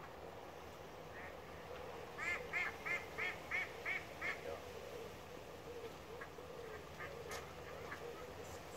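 A duck quacking in a quick, even series of about seven calls, roughly three a second, starting a little after two seconds in. A single sharp click comes near the end.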